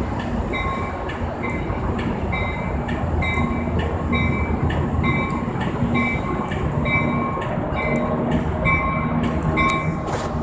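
Amtrak passenger train pulling slowly into a station, its bell ringing in a steady rhythm about three times every two seconds over the low rumble of the engine and wheels, with scattered clicks from the wheels on the rails.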